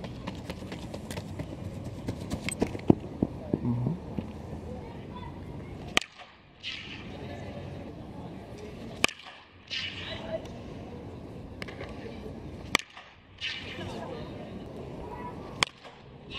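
Baseball bat hitting pitched balls in batting practice: four sharp cracks, about three seconds apart, beginning around six seconds in.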